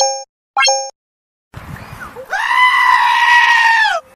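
Two short electronic pop sound effects in the first second, then a bleating farm animal's loud, long, human-like scream, held about a second and a half and falling in pitch as it ends.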